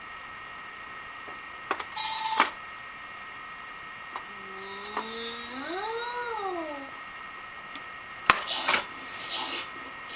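Plastic electronic farm playset being handled: sharp plastic clicks and knocks, a short electronic beep, and in the middle a single long electronic animal call that rises and then falls.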